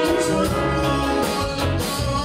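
Live band with electric guitars, bass, keyboards, drums and a horn section playing a song, heard from the back of a theatre on a small camera's microphone.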